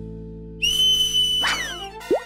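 A cartoon whistle sound effect. About half a second in, a shrill, breathy whistle tone starts and is held for about a second, then it slides downward in pitch near the end. Soft background music fades out beneath it.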